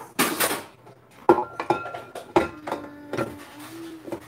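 Stainless-steel stand-mixer bowl clanking and scraping as it is handled and its sides are scraped down with a spatula. Two sharp knocks in the middle, the first ringing briefly.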